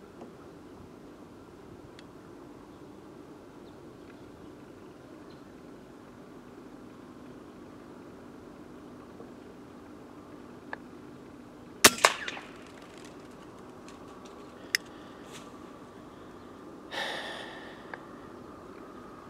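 A single shot from an FX Impact X .22 PCP air rifle firing an H&N slug about twelve seconds in: one sharp report with a brief ring after. A faint steady low hum sits underneath, with a single click a few seconds after the shot.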